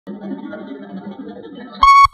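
Faint background murmur, then near the end a loud, steady electric starting-stall bell sounds as the gates spring open at the start of a horse race, cutting off and sounding again in short pulses.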